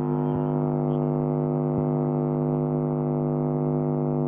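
A steady, unchanging low-pitched buzzing drone, one pitch with many overtones, on the call audio, with a few faint clicks.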